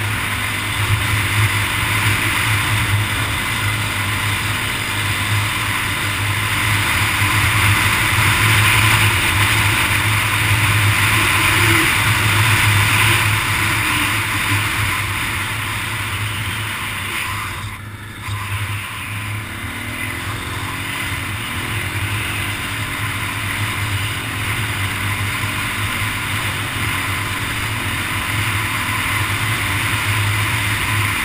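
Snorkelled ATV engine running at speed, with steady wind noise on the microphone. About two-thirds of the way through, the engine briefly eases off, then picks up again with a rising pitch.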